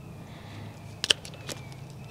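Wire cutters snipping through eight-gauge wire: one sharp snip about a second in, then a lighter click.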